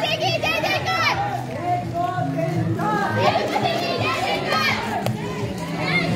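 A crowd of children's voices calling and shouting over one another, with many voices at once throughout.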